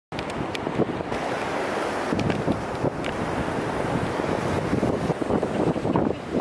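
Wind buffeting the microphone, a steady rumbling rush with occasional knocks, over the wash of ocean surf.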